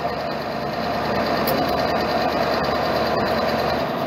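A steady, even mechanical running noise with no clear pitch, holding one level throughout, with a few faint clicks.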